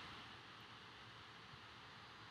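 Near silence: faint steady background hiss.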